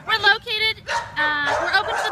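A dog whimpering and yipping in a few short, even-pitched calls, mixed with a person's voice.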